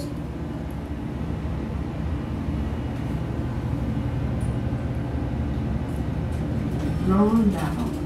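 Steady low hum and rumble of a passenger elevator cab travelling down and coming to a stop, heard from inside the car.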